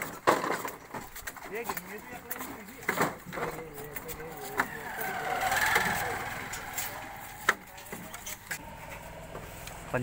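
Banana hands being cut from the stalk with a knife and dropped into plastic crates: scattered sharp knocks and chops, with voices in the background and a noise that swells and fades around the middle.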